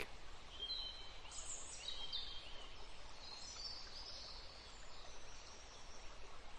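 Faint bird chirps, short high calls scattered over the first five seconds, above a soft steady hiss.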